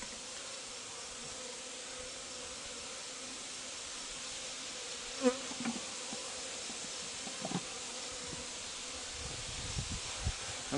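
Honeybees buzzing as they fly around a just-closed top-bar hive, a steady hum with a brief louder buzz about five seconds in.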